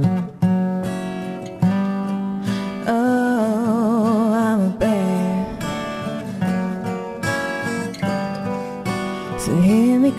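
Live acoustic band music: acoustic guitar strummed in chords, with a voice holding one long wavering note about three seconds in and sliding up into the next line near the end.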